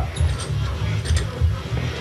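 Background music with a steady bass line, with a few light clicks over it.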